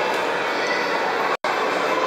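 Steady running noise of a turning indoor carousel, heard from a rider's seat, broken by a split-second dropout about one and a half seconds in.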